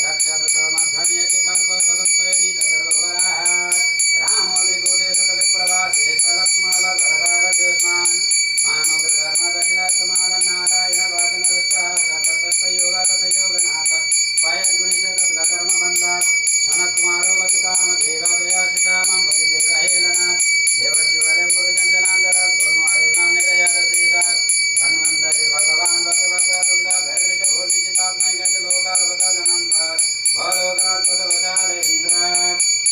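A puja hand bell rung continuously, its high ringing steady and unbroken, over a devotional chant being sung.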